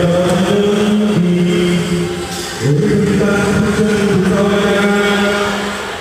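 Music soundtrack: a long, steady chanted vocal note, held for about two seconds, dipping briefly, then taken up again and held to near the end.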